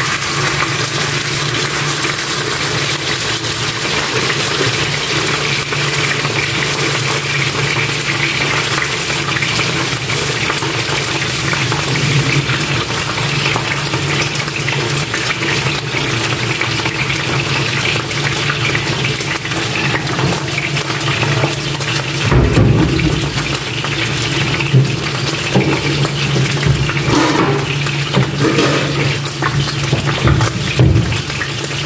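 Boneless milkfish (bangus) frying in a pan of hot oil: a loud, steady sizzle with a low hum underneath. From about 22 seconds in there are scattered knocks against the pan.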